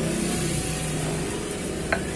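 Steady low hum of a nearby engine running, with the scraping of a stone pestle grinding chili sambal in a stone mortar. One sharp click near the end.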